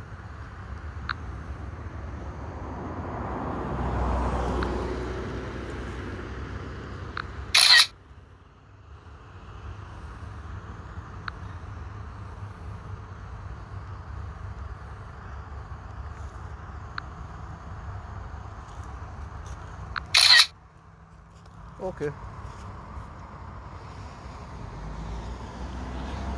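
Two short camera-shutter sounds from the drone's phone controller app as photos are taken, one about eight seconds in and another about twenty seconds in, over a steady low outdoor rumble.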